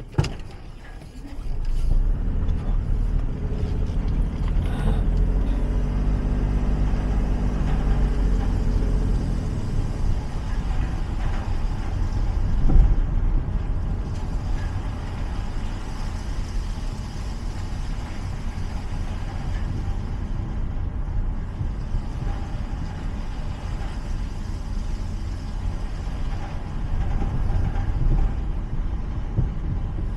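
Car driving slowly: a steady low engine and tyre rumble that picks up about two seconds in, with the engine note standing out for a few seconds after that.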